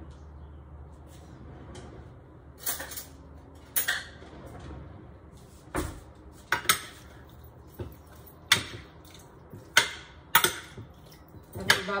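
Metal spoon clinking against a glass baking dish while mixing cubed pork in its marinade: about ten sharp, irregular clinks spread across a dozen seconds.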